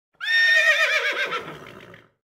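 A horse whinnying once: a high call that wavers, then drops and fades away.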